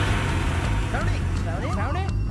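A film soundtrack's low steady rumble. Short, high calls that rise and fall in pitch join in from about a second in.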